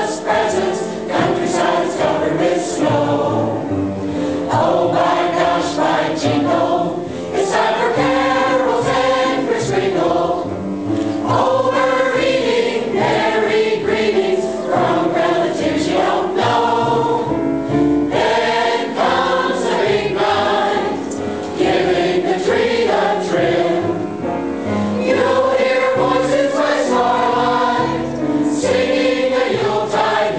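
A large mixed choir of women and men singing together.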